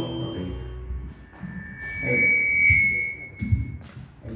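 Acoustic guitar playing dies away in the first second. Then come loose, scattered notes from the acoustic and electric bass guitars, with a held high ringing tone in the middle and a few low bass plucks near the end.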